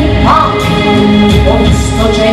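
A woman singing over live band accompaniment, with sustained chords and low bass notes beneath.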